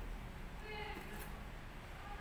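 Faint background voices, a short stretch of distant talk about half a second to a second in, over low room hum.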